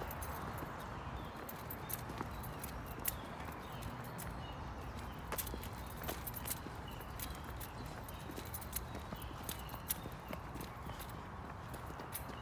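Footsteps on a paved walking path: irregular light taps over a steady background hiss.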